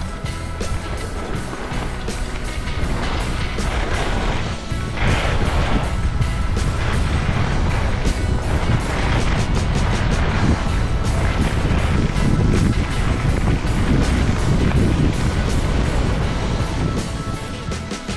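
Wind rushing over a helmet-mounted camera's microphone, with skis scraping and chattering over packed snow during a downhill run. It gets louder from about five seconds in as the skier speeds up.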